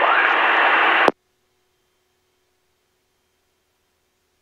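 Aircraft VHF radio hissing with static at the tail of a transmission on the traffic frequency, cut off abruptly with a click about a second in, then near silence.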